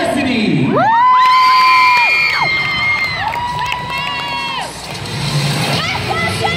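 A gym crowd cheering and screaming. Two long, high-pitched held screams stand out, the first about a second in and the second soon after, over steady crowd noise.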